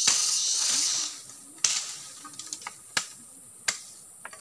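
High, steady insect buzzing that cuts off about a second in, then three sharp cracks of dry wood about a second apart, with a few lighter clicks between, as firewood is being cut and broken.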